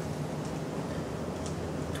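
Steady low hum and hiss of room background noise, with a faint tick about one and a half seconds in.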